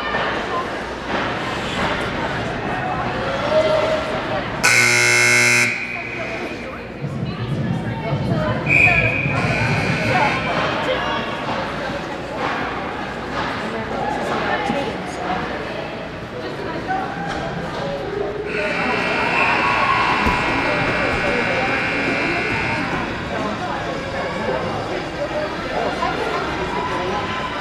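Ice hockey game sounds in an arena rink: skates and sticks on the ice over spectators talking, with an electric arena buzzer sounding for about a second around five seconds in. Crowd noise swells louder for a few seconds about two-thirds of the way through.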